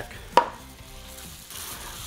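A small bowl set down on a wooden table with one sharp knock about a third of a second in, followed by faint handling sounds of oil being rubbed into meat.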